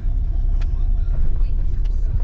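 Steady low rumble of a car's engine and tyres heard inside the moving car on wet asphalt, with a couple of faint ticks.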